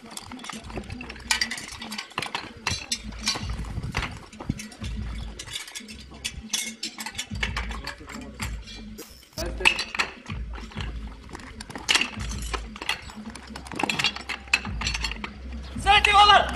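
Repeated metal clinks and knocks of suction-hose couplings being handled and joined to a portable fire pump, with a low rumble underneath.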